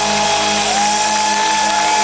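Live metal band holding out a long sustained chord at the end of a song, with a high held note that slides from one pitch to the next, recorded loud from the audience.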